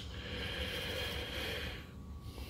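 Quiet pause: low room noise with a faint breath near the microphone.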